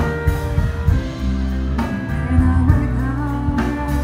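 Live band playing a slow soul ballad, with bass, guitar and drums. A woman's singing voice comes back in near the end.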